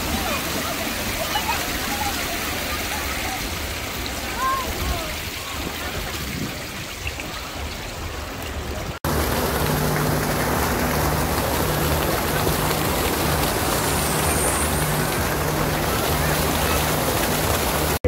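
Fountain water splashing in a steady rush, with indistinct voices of people around. About halfway the sound cuts and the water rush becomes louder and even, from arching fountain jets falling close by.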